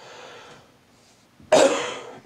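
A man coughs once, a sudden loud cough about one and a half seconds in, after a faint breath.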